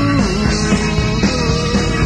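Rock band playing live: a held melody line that slides up to a new note about a second in, over bass and a steady drum beat.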